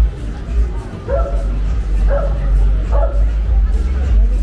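A dog barks three times, about a second apart, over street chatter and music.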